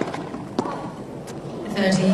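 Tennis ball hits on a hard court: a sharp pop of a racket striking the serve, then a fainter knock about half a second later and a faint one a little over a second in, over quiet court ambience.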